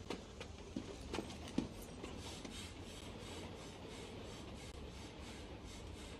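Faint sounds from a wrecked, smoking Dodge Charger: a few small clicks and knocks in the first two seconds, then a faint steady hiss.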